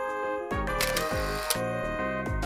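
Background music with a steady beat, and a camera-shutter sound effect laid over it: a short hiss ending in a sharp click about a second and a half in.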